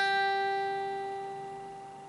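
A single note on an acoustic guitar, the high E string fretted at the third fret (G), plucked just before and ringing on, fading slowly.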